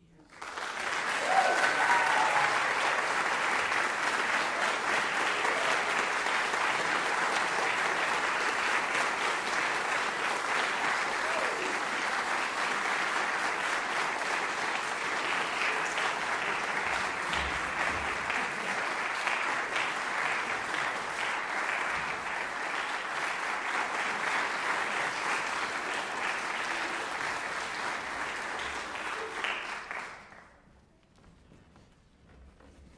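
Audience applauding, sustained and even for about half a minute, starting all at once and stopping abruptly at the end.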